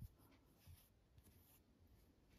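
Near silence, with faint rustling of yarn being handled as the thread tails of a crocheted flower are pulled and tied, once about two-thirds of a second in and again around a second and a half.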